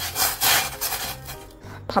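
Stainless steel saucepan of frozen rice being shaken and slid about on a gas stove's burner grate: a quick run of scraping strokes that dies away after about a second and a half.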